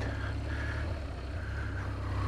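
BMW R1200GS motorcycle's boxer-twin engine running steadily with a low note while the bike rides off-road on a dirt track.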